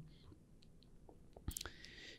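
Near silence with a few faint clicks, then a man's short intake of breath near the end.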